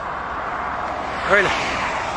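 Steady noise of road traffic on a multi-lane highway, an even hiss-like rumble with no distinct passes, under one short spoken word.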